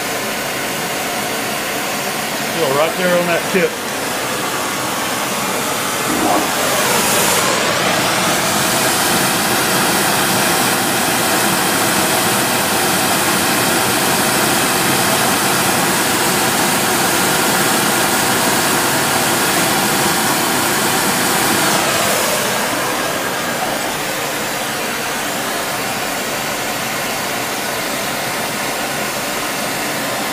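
Oxy-fuel powder spray-welding (metalizing) torch comes on about six seconds in and runs with a steady hissing rush for about fifteen seconds while spraying metal onto a turning lathe shaft, then shuts off. A quieter steady hiss of shop machinery is heard before and after.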